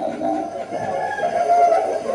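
A Buddhist monk's voice through a microphone, intoning his sermon in a drawn-out, sing-song chant with a held note near the middle.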